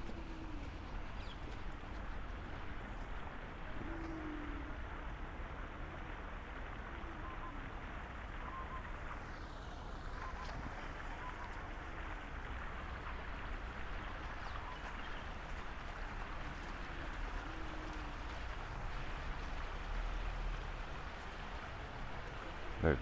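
Steady splashing rush of water from small fountain jets bubbling up in a shallow pool.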